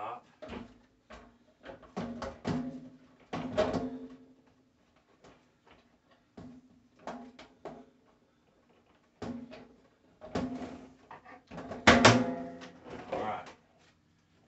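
Plastic shop-vac motor head being set and fitted onto a stainless steel tank: a run of knocks and clatters, several followed by a short metallic ring, with the loudest knock near the end.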